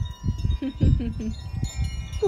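Wind chimes ringing steadily, several bell-like tones held and overlapping, with gusts of wind rumbling on the microphone.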